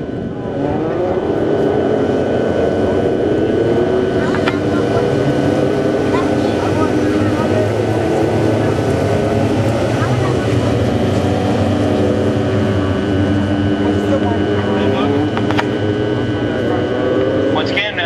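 A pack of dwarf race cars' motorcycle engines running together as the cars circle the dirt oval in formation, the pitches of the many engines rising and falling against one another.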